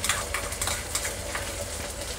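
Shredded cabbage, capsicum and carrot sautéing in oil in a kadhai: a steady sizzle with scattered crackles.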